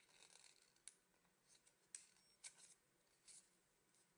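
Very faint, brief rustles of folded origami paper being handled as its creases are pinched and pressed: a few soft crinkles through near silence.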